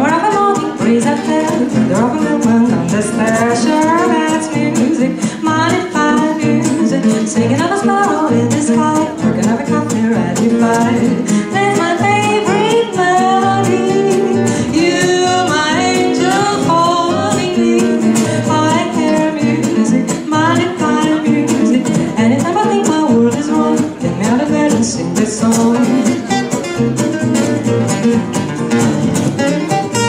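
Live jazz: a woman singing, accompanied by two acoustic guitars.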